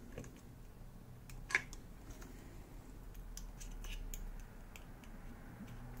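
Faint scattered clicks and light metal-on-metal sounds of a screwdriver turning the synchronising screw on a bank of motorcycle carburettors, with one sharper click about a second and a half in.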